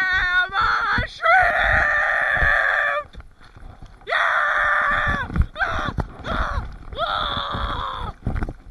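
A young woman screaming close to the microphone: a run of long, harsh screams with short gaps between them, the longest lasting about two seconds. Low thumps sound underneath.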